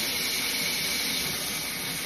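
A steady rushing hiss with a faint high whine running through it.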